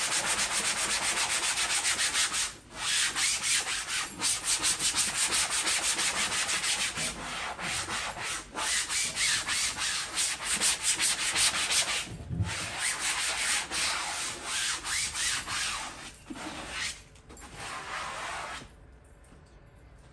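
120-grit sandpaper rubbed by hand over chalk-painted upholstery fabric on a chair seat, in rapid back-and-forth strokes with a few brief pauses; it stops near the end. This is sanding the dried paint coat on the fabric to soften it before waxing.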